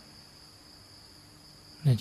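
Crickets making a faint, steady, high-pitched drone; a man's voice starts again near the end.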